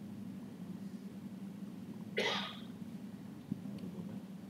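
A single short cough about two seconds in, over a steady low hum.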